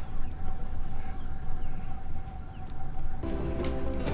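Outdoor ambience on an anchored boat: a low rumble with a faint steady hum and a few faint bird chirps. About three seconds in, music starts.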